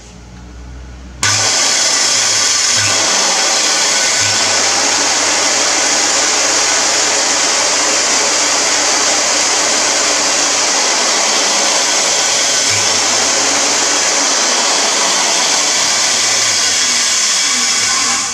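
Unrestored Shopmate 1875A 7-1/4-inch circular saw switched on about a second in and running steadily at full speed with nothing being cut: a loud, high motor-and-blade whine.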